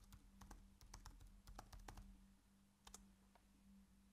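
Faint computer keyboard typing: a quick run of keystrokes over the first two seconds, then a couple more about three seconds in.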